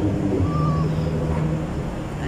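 A steady low mechanical drone, like an engine running at a constant speed.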